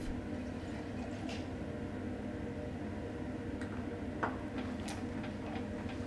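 Steady low hum of lab equipment, with a few faint clicks and taps scattered through as beakers and hotplate stirrers are handled on the bench.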